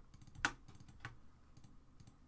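Faint keystrokes and clicks at a computer: one sharper click about half a second in, another about a second in, then a few lighter taps.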